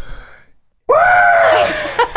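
A person lets out a loud, high-pitched yell held for about a second, starting just under a second in after a brief silence, its pitch sagging slightly before it stops.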